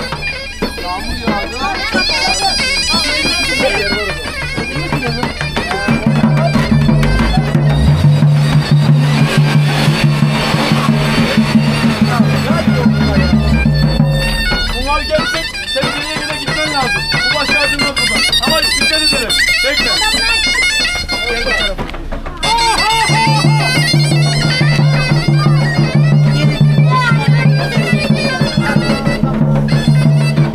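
Loud Black Sea folk dance music on a reed wind instrument, over a steady low hum that drops out for several seconds in the middle. People in the crowd are talking throughout.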